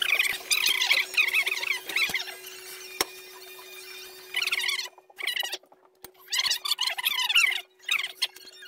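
High-pitched, squeaky chatter from sped-up time-lapse audio, most likely voices played back fast, over a steady hum. It cuts out abruptly a few times near the middle and once near the end.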